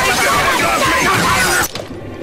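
Cartoon fight sound effects: a dense, continuous clatter of crashing and smashing noises that cuts off abruptly shortly before the end.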